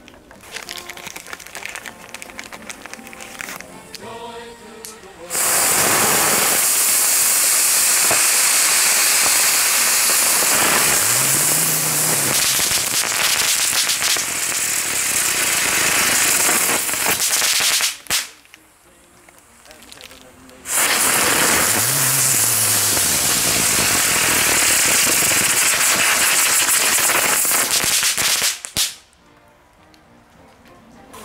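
Two Xplode 'Storm – The Force Rising' ground fireworks burning one after the other. Each gives a loud, steady rushing hiss of spraying sparks: the first starts about five seconds in and lasts roughly twelve seconds, the second runs for about eight seconds after a short lull. Both cut off abruptly.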